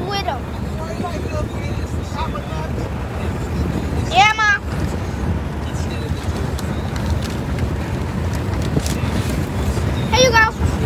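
Steady low rumble of road and engine noise inside a car's cabin, with a brief high-pitched voice about four seconds in.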